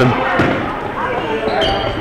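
Basketball being dribbled on a gymnasium floor as players run up the court, with background voices echoing in the hall. Two short high squeaks, typical of sneakers on the court, come near the end.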